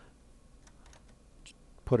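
A few faint, scattered clicks from working a computer's mouse and keys, over low room tone; a man's voice starts near the end.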